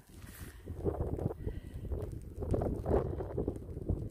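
Wind buffeting the microphone outdoors, a steady low rumble with irregular gusts and soft thumps.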